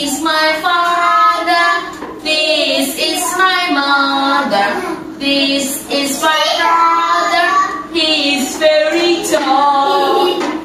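A woman and young children singing a children's song in short phrases, with brief breaks between lines.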